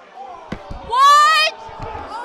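A woman's loud, high-pitched shout of shock rises in pitch about a second in, lasting about half a second. Dull thumps come just before and after it as the handheld microphones are knocked about.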